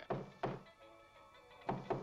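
Three dull thunks over quiet background music: one about half a second in and two close together near the end.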